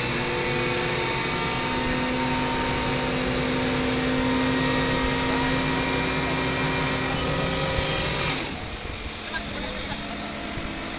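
Heavy diesel engine of a mobile crane running steadily with a droning hum. About eight seconds in it drops abruptly to a quieter, rougher engine noise.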